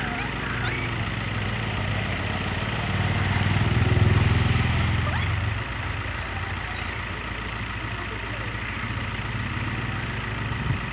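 A motor vehicle's engine running with a low hum, swelling louder from about three seconds in and dropping back about five and a half seconds in.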